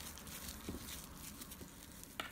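Faint crinkling of plastic cling wrap as its ends are twisted shut around a filling of melted chocolate, with a couple of small ticks.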